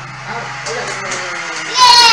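Background music dies down, then near the end a toddler lets out a loud, very high-pitched squeal that falls in pitch.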